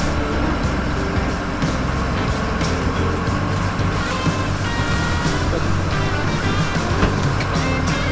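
Workboat engine running with a steady low drone, under background music with held tones.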